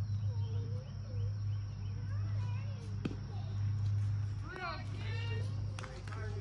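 Distant voices calling out across an outdoor ball field over a steady low hum, with a louder high-pitched call about two-thirds of the way in. Two sharp knocks, one about halfway through and one near the end.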